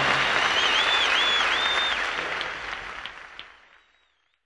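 Audience applauding at the end of a live song performance, with a few gliding whistles from the crowd about half a second to two seconds in; the applause fades out shortly before the end.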